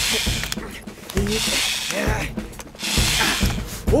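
Cartoon cordless drill running in short bursts as it tightens the bolts holding an outboard motor onto a boat, over background music.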